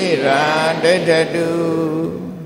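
Buddhist chanting in male voice: a low pitch held steady while the melody moves up and down above it.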